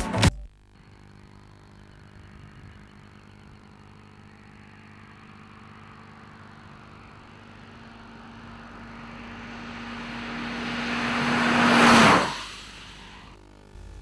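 A Ford EcoSport approaching along the road and driving past: the steady engine note grows louder for about eleven seconds, peaks in a brief rush of engine and tyre noise about twelve seconds in, then quickly fades.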